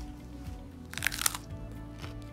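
Crunching on a raw broccoli head: a short cluster of crisp crunches about a second in, over quiet background music.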